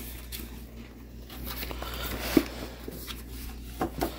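Paper rustling and crinkling as a birthday present is unwrapped, quiet and irregular, with a short knock near the end.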